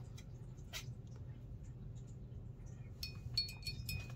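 Quiet room with a faint steady low hum and a few small taps as a paintbrush works at the paint palette, then a brief high, ringing clink about three seconds in.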